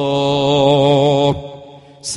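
A man's voice chanting, holding one long note with a slight waver that fades out about a second and a quarter in.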